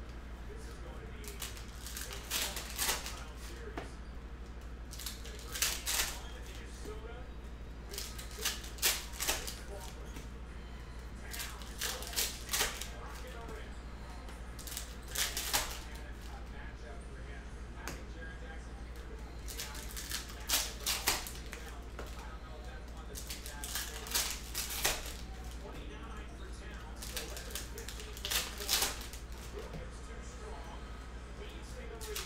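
Shiny trading-card pack wrappers being torn open and crinkled by hand, in short crackly bursts about every two to four seconds, over a low steady hum.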